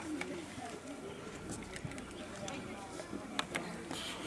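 Distant voices of a group of children and adults chattering on an open football pitch, with a few faint sharp clicks and one clearer click near the end.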